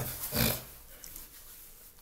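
A man's single short breath, about half a second in.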